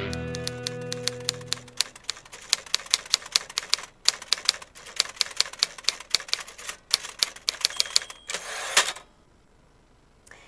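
Typewriter keys striking in quick, uneven runs of several a second, with a couple of short pauses, while music fades out over the first two seconds. Near the end comes a brief ring and then a short rushing sound, after which the typing stops.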